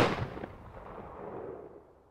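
A single boom-like hit from the outro logo sting, with a long reverberating tail that dies away to silence within about two seconds.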